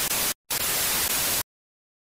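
Television-static sound effect: a hiss of white noise that drops out for a moment about a third of a second in, comes back, and cuts off suddenly about a second and a half in.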